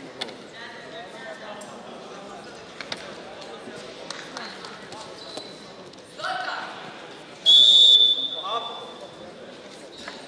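A referee's whistle blown in one steady blast of about a second and a half, the loudest sound, stopping the wrestling action. Shouts come just before and after it, over the hall's background noise with a few sharp knocks.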